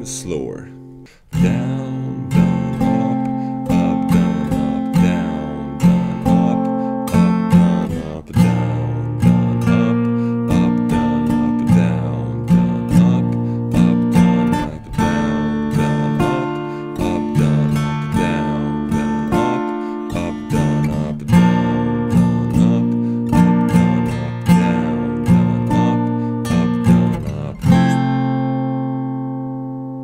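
Acoustic guitar in drop D tuning, strummed in a down, down-up, up, down-up pattern through F/C, B-flat major and D minor chords. About two seconds before the end the last chord is struck and left ringing as it fades.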